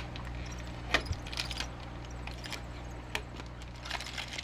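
Aluminium foil tape being peeled off a glass jar and crumpled by hand: scattered crinkles and sharp clicks over a steady low hum.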